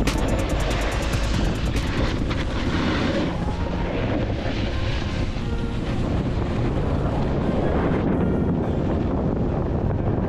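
Wind rushing and buffeting over a GoPro Hero 11's microphone while skiing downhill, with the hiss and scrape of skis on groomed snow underneath. Music fades out during the first few seconds.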